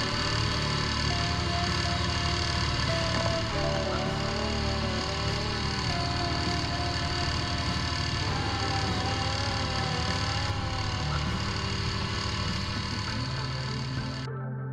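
Small Honda outboard motor driving an inflatable dinghy, running steadily at speed with water churning from its wake.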